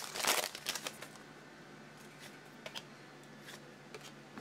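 Foil trading-card pack wrapper crinkling as the pack is opened, for about a second, then quieter handling with a few faint clicks as the cards are pulled out.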